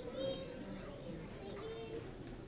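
Faint children's voices off-microphone, calling out answers to a question, with a short burst near the start and another late on.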